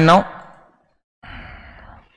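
A man breathing out audibly, a soft sigh starting a little past a second in and lasting under a second.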